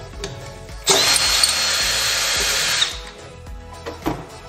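Cordless drill with a T50 Torx bit running in reverse for about two seconds, with a steady high whine, backing out the bolt of a school bus seatbelt height-adjuster bracket until it comes loose.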